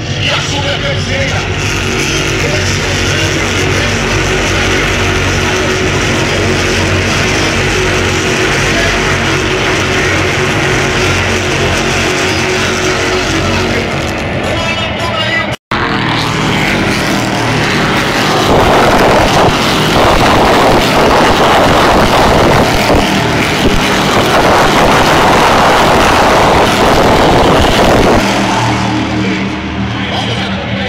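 Stock car racing cars' engines running around the circuit, heard from the grandstand as a steady mix of several engine notes. After an abrupt cut about halfway, the engine noise gets louder and rougher for about ten seconds before easing off near the end.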